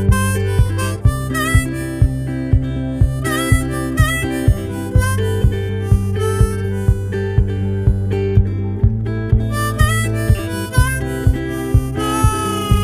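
Background music: an instrumental passage with a harmonica melody over a steady beat of about two strokes a second.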